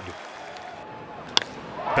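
Ballpark crowd noise, then a single sharp crack of a bat hitting a baseball about 1.4 seconds in.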